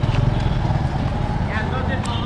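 Motorcycle engine running at a steady pace while riding, a low even drone with wind rushing over the microphone.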